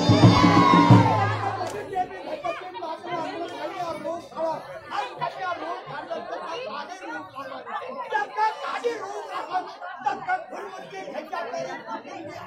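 Music with a steady held drone and a singing voice stops about a second and a half in. After that comes the overlapping chatter of a large crowd.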